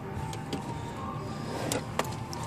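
Steady low hum with a few faint clicks. Near the end comes a sharper click and handling noise as the carpeted trunk floor panel of a car is lifted.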